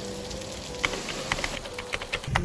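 Steady rain falling, with a scatter of sharp drip sounds standing out, over soft background music holding long notes.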